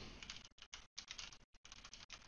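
Faint typing on a computer keyboard: a quick, uneven run of keystrokes.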